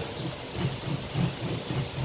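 Green plastic hand-operated kitchen gadget being pressed and twisted down into its cup, grinding in a quick rhythm of about four strokes a second over a steady hiss.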